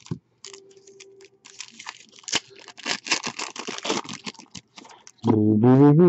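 Foil wrapper of a football card pack being torn open and crinkled, and the cards handled: a run of quick crackles and clicks. A short wordless vocal sound comes near the end.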